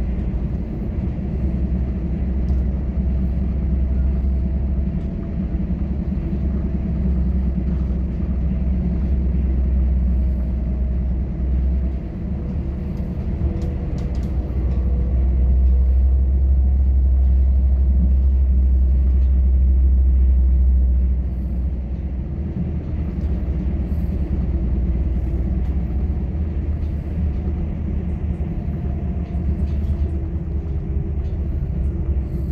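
Passenger train running at speed, heard from inside the carriage: a steady low rumble of wheels on the track, with a faint steady whine above it. The rumble grows louder for several seconds about halfway through, then settles back.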